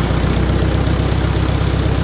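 Four-cylinder tractor engine running steadily at slightly raised revs, driving a centrifugal irrigation pump. Water gushes hard from the pump's outlet pipe.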